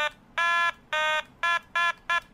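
An Otamatone, the handheld Japanese electronic toy instrument, playing a run of separate short notes at nearly the same pitch, each shorter than the last.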